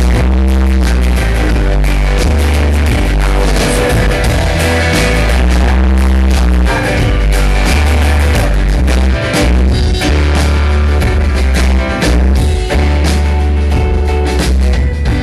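Live rock band playing an instrumental passage between sung lines: guitars over heavy, shifting bass notes and steady drum hits, loud throughout.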